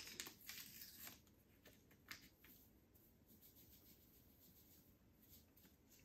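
Near silence, with a few faint rustles and small tearing sounds from a small yeast packet being opened by hand, mostly in the first couple of seconds.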